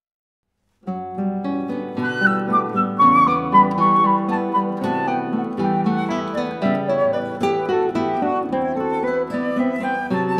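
A little under a second in, after silence, a flute and acoustic guitars begin playing together. The guitars pick notes beneath a flowing flute melody, opening a song.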